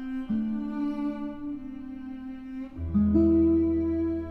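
A cello and guitar duo playing a slow piece: the cello holds long bowed notes, moving to a new note about a third of a second in. Near three seconds in, a low bass note enters under a new, higher cello note and the music swells to its loudest.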